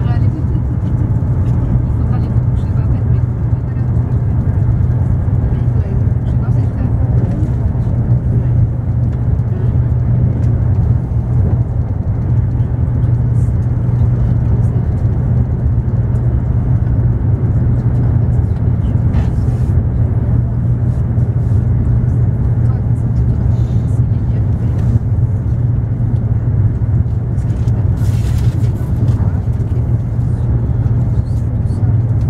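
Steady low running rumble of a Eurostar high-speed train heard from inside the passenger carriage at speed, with a brief hiss about two seconds before the end.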